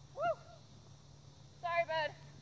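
Handler's voice calling two short, high-pitched cues to a dog running agility jumps, a brief one near the start and a longer one near the end.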